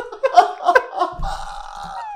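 Two men laughing hard in short broken bursts, then one drawn-out laugh that trails off near the end.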